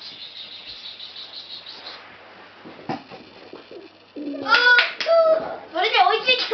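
Children's high-pitched voices: excited calls and squeals that start about four seconds in, after a few seconds of faint background noise.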